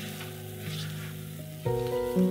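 A cabbage, rice and egg cake frying in oil in a pan: a steady, soft sizzle. Background music plays over it and gets louder near the end.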